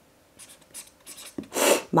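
Pen scratching on paper in a series of short, faint strokes, then a loud hiss near the end as a voice begins.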